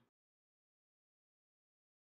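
Silence: the sound track is muted, with no sound at all.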